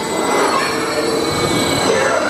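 Family launch coaster train rolling past over a track section lined with rubber drive tires: a steady rolling noise of wheels and tires on the track, with a faint wheel squeal.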